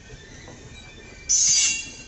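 Indian Railways passenger coaches rolling slowly past, with a faint click from a rail joint. About a second and a half in comes a brief, loud, high-pitched metallic squeal from the running gear, lasting about half a second.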